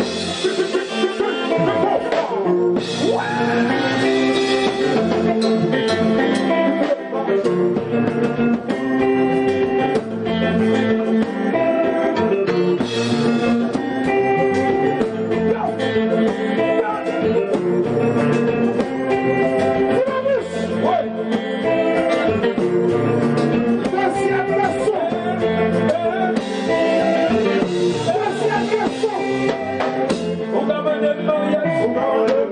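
A live band playing a song: electric guitars and drums, with a singer.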